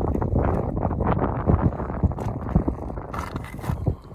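Wind buffeting the microphone: a gusty low rumble with scattered light knocks, easing near the end.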